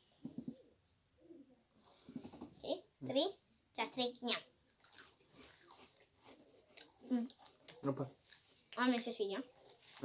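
People chewing small crunchy cracker-like cookies, with short crisp crunches, between brief bursts of voice.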